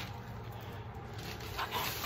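A person breathing hard while climbing stairs with a heavy bag, with a faint short vocal sound near the end.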